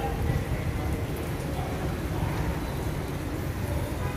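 Steady outdoor background noise, mostly a low rumble, with no distinct events.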